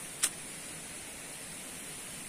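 Steady faint outdoor hiss, with one short sharp click about a quarter of a second in.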